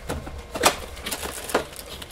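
Paperboard product box being opened by hand, its end flap worked loose with two sharp clicks about a second apart, the first the louder.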